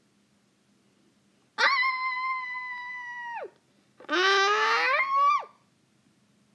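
A child's two wordless high-pitched cries. The first is a long held note that drops off at its end; after a short pause comes a shorter, shrieking cry that rises in pitch.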